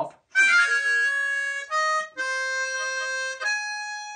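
A diatonic blues harmonica played solo: a quick little fall-off slide down in pitch, then a few held notes, the last of them long.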